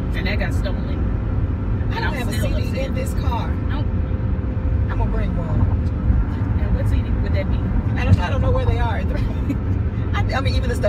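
Car cabin road and engine noise while driving, a steady low rumble throughout, with a woman's voice coming in briefly a few times.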